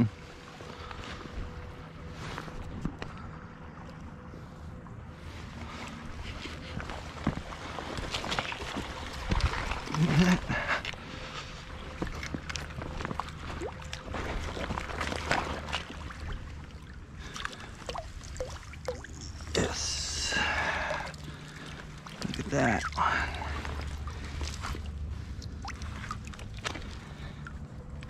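A hooked brown trout splashing in the water while it is fought on a fly rod and drawn into a landing net, with scattered clicks and rustles from handling the rod and line. A noisier burst of water sound comes about two-thirds of the way through.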